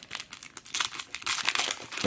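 Foil wrapper of a trading-card pack crinkling and tearing as it is ripped open by hand: a rapid run of small crackles that starts about half a second in.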